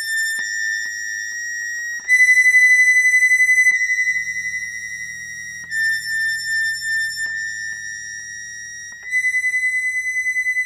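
A high, steady electronic tone that steps back and forth between two close pitches every couple of seconds, with a low drone underneath from about four seconds in until about nine seconds in.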